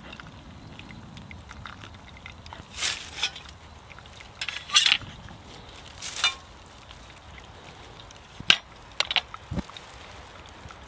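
Metal camp cookware being handled: three short scraping clatters as the mess-kit pot is moved and set down, then a few sharp clicks and a soft low thump near the end.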